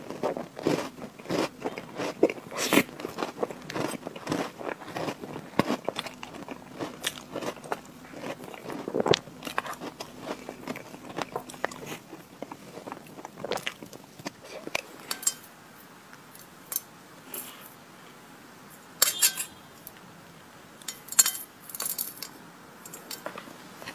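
Close-miked chewing and mouth sounds of eating chocolate Oreo crumb cake with cream, with crunching of the cookie crumbs. The clicks and smacks come thick and fast for the first half, thin out after about twelve seconds, and a few sharper clicks come near the end.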